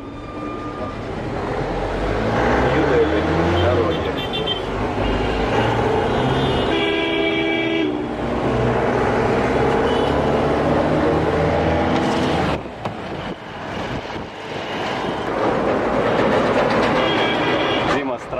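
Road traffic heard from inside a moving car's cabin: engine and road noise, with vehicle horns honking and one longer horn blast about seven seconds in. The noise drops back somewhat after about twelve seconds.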